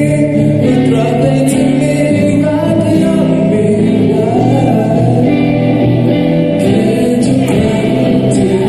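A young man singing a slow, sentimental song into a microphone, with other voices singing along in long held notes.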